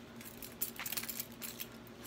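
Keys and metal hardware on a Louis Vuitton six-key holder clinking and jingling as it is handled and adjusted: a quick run of light metallic clicks starting about half a second in.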